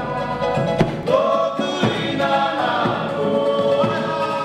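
Background music with a choir singing held notes, and a few percussion hits.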